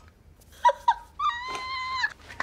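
A woman's excited high-pitched squeals: two short falling yelps, then one long held squeal from just past a second in.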